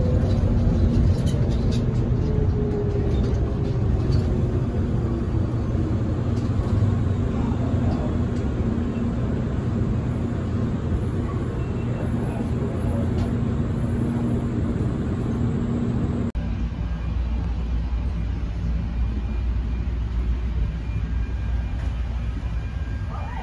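Airport people-mover train running on its guideway, its motor whine falling in pitch over the first several seconds as it slows into the station. After an abrupt cut about 16 seconds in, a steady low hum takes over.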